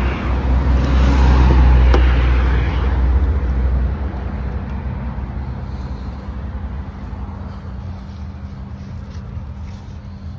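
Rear door of a 2018 Chevy Tahoe being opened, its latch clicking once about two seconds in, under a loud low rumble that fades after about four seconds. A steady low hum carries on beneath.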